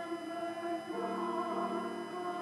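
A small church choir singing held notes in harmony, moving to a new chord about a second in.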